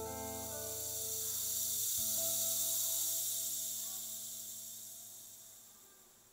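The last chord of a song ringing out and fading through Tannoy Stirling GR loudspeakers driven by a Unison S6 tube amplifier, its bass note stopping about two seconds in. A high hiss then swells and dies away as the track ends.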